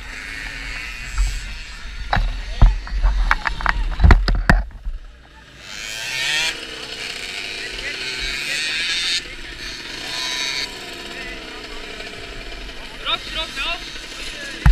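Voices and distant moped engines, with a cluster of sharp knocks close to the microphone between about two and five seconds in, and a few more clicks near the end.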